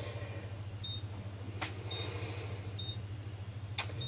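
Short high-pitched key beeps from a printer's control-panel buttons as its menu is stepped through, three of them about a second apart, with a couple of sharp clicks and a low steady hum underneath.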